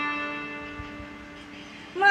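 A chord on a plucked string instrument ringing out and slowly dying away, one low note sustaining longest.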